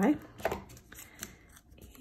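Adhesive tape runner drawn across the back of a small cardstock piece: a short scratchy rasp about half a second in, then a couple of faint clicks.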